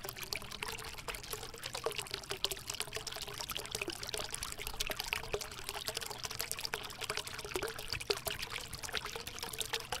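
Rain falling steadily, a dense crackling patter of drops.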